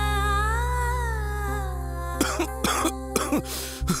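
Background music of long held tones over a low drone. About halfway through, a man starts a run of short coughs that ends in a grunt.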